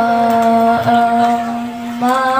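A boy's voice in melodic Quran recitation (tilawah), sung into a microphone: the pitch dips slightly at the start, then he holds one long, steady note.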